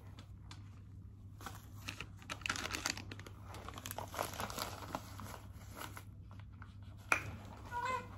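Crinkling and rustling of a crumpled wrapper being handled, coming in irregular spells, with a sharp click about seven seconds in. Near the end, a newborn baby starts to cry in short rising wails.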